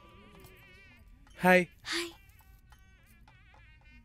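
Faint film soundtrack music with a quavering high tone, broken about a second and a half in by two short, loud voice-like calls, the first louder than the second.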